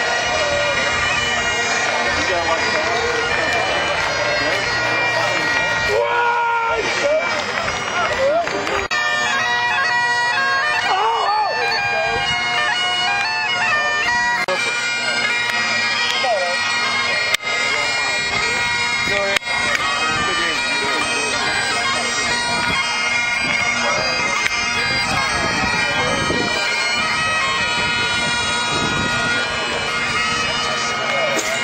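Bagpipes playing, the steady tones of their drones held throughout, with people talking underneath.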